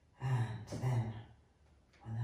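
A voice making two short breathy voiced sounds in quick succession, each about half a second long.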